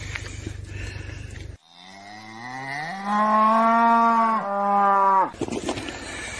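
A cow mooing: one long moo of about three and a half seconds that rises in pitch at the start, holds, breaks briefly and then falls away. Before it there is a steady low background hum.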